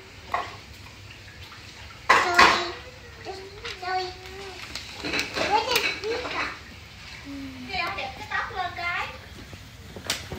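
Young children's voices in short spells of talk or babble with no clear words, the loudest burst about two seconds in.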